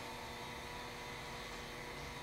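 Quiet workshop room tone: a steady hiss with a faint, even hum and no distinct event.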